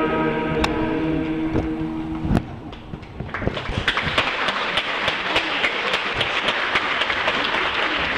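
A men's church choir holding its final hymn chord, which releases about two seconds in. After a short lull, the congregation applauds steadily.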